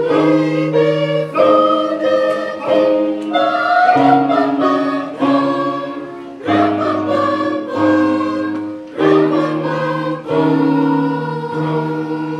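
Mixed choir of men, women and children singing a Christmas carol in several-part harmony, in slow held notes with short breaks between phrases.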